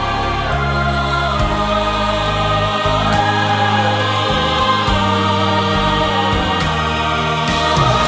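Choir singing a gospel song with instrumental accompaniment, held notes over a steady bass line.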